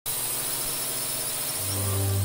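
Logo-intro sound effect: a loud rushing noise, then a deep steady bass tone that comes in about one and a half seconds in and holds.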